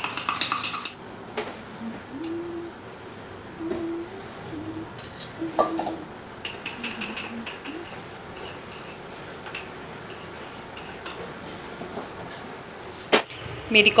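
Steel kitchen utensils clinking and tapping against a ceramic mug as coffee is poured from a saucepan through a small strainer, with scattered light clicks and one sharper knock near the end as the mug is set down on the stone counter.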